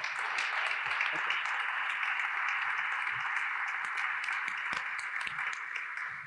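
Audience applauding steadily, the clapping tapering off near the end.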